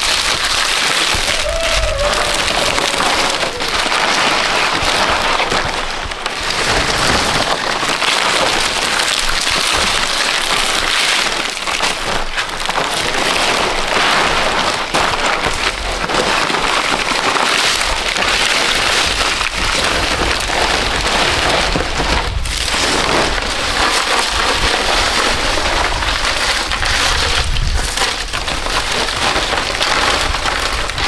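Palm fronds rustling and crackling as they are handled and tied onto a bamboo roof frame, over a steady hiss like rain.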